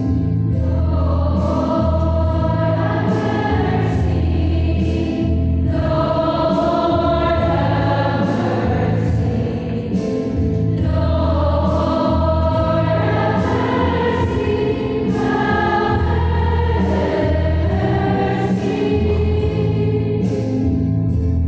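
A choir singing a hymn with steady, sustained low instrumental accompaniment, in phrases of several seconds with short breaks between them.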